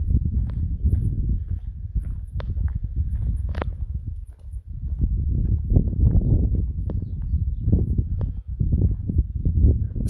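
Footsteps of a person walking on a tarmac road, a series of short clicks over a low, uneven rumble on the microphone.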